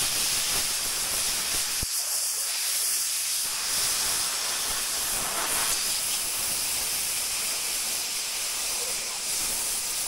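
Arc welding on a rusty steel beam: the arc gives a steady hiss as the bead is laid.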